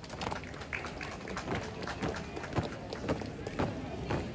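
A drill team's boots stamping and stepping on a hard court in a marching routine, a quick, uneven series of thuds several times a second.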